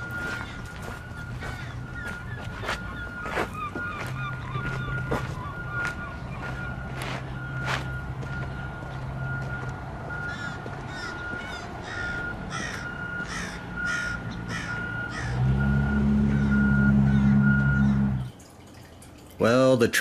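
Outdoor ambience: birds calling over a steady high-pitched tone, with scattered clicks. A low engine hum grows louder for the last few seconds, then everything stops abruptly.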